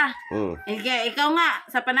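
A rooster crowing once, a call of several rising and falling parts lasting about a second, beginning just under a second in.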